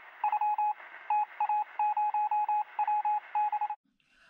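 Electronic beep sound effect: a single-pitch beep repeated rapidly in short runs of two to five, about five beeps a second, cutting off suddenly near the end.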